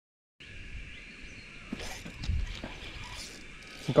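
Outdoor ambience with a steady high-pitched hum and a few sharp knocks and clicks from handling fishing gear in a small aluminium boat; the first fraction of a second is silent.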